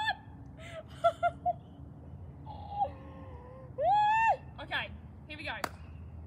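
A woman's nervous, wordless whimpers and squeals as she braces to step onto Lego bricks barefoot. There are three short yelps about a second in and a longer high squeal about four seconds in, which is the loudest. A single sharp click comes shortly before the end.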